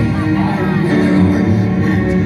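Symphonic black metal band playing live in a club, with sustained keyboard chords held throughout and a voice over them.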